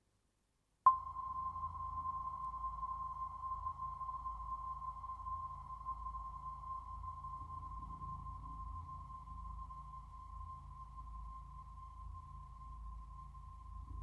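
Electronic music: a single steady high tone starts abruptly about a second in and slowly fades, held over a low rumbling drone.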